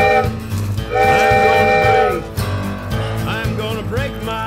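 A train whistle sounds a chord of several steady tones, briefly at the start and again for about a second, over a country-rock song with a steady bass beat and guitar.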